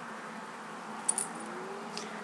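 A few small, quick plastic clicks about a second in, as a mascara tube and wand are handled and closed, over faint room hiss.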